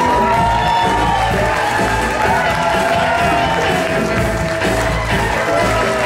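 Live pop-rock band playing with strings: strummed acoustic and electric guitars, violin, cello, bass and drums, with a long held melody line that glides between notes over a steady beat.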